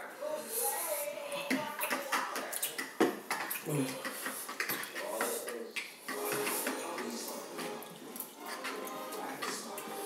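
Quiet, indistinct talking and mumbling from young voices, with a few short clicks or knocks in between.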